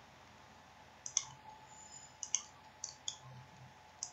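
Computer mouse button clicks: a few sharp clicks, some in quick pairs, starting about a second in, as points are picked one by one on screen.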